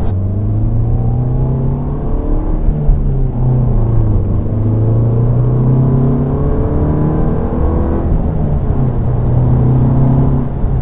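Interior drone of a VW MK7 GTI's 2.0-litre turbocharged four-cylinder engine and tyre noise heard inside the cabin while cruising at highway speed. The engine note is steady, drifting slightly up and down in pitch.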